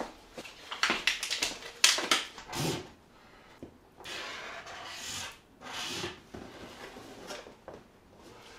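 Felt-tip marker drawn across a cardboard shoebox in several short scratchy strokes, with light knocks and rustles as the box is handled.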